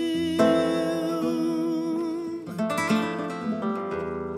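Flamenco guitar playing a soleá: a chord struck about half a second in and left ringing, then a quick run of plucked notes a little past the middle, over a long held note that fades out after about two seconds.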